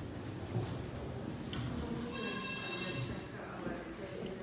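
A single high electronic beep, steady and just under a second long, about two seconds in, over low indoor background noise and faint footsteps on a hard floor.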